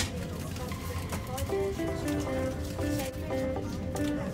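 Background music: a gentle melody of short held notes over a steady low rumble.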